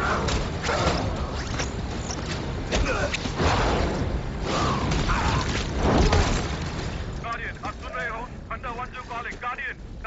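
Film fight sound effects: heavy booming impacts, crashes of debris and fast whooshes pile up, loudest about six seconds in. From about seven seconds, a man's strained, wordless cries take over.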